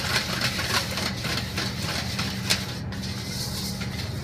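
A wire whisk scraping and clicking against a stainless steel bowl as it stirs melted shortening and cocoa, over a steady low hum.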